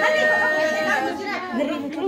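A group of women chattering together, with one woman's long, steady high-pitched vocal cry that breaks off about a second in.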